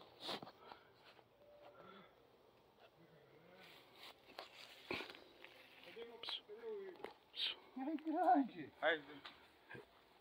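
Mostly quiet, with faint distant voices of people talking and a few soft clicks.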